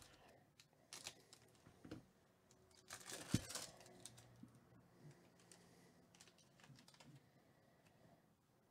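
A foil trading-card pack crinkles and crackles faintly as it is handled and torn open. A louder burst of tearing and crackling comes about three seconds in.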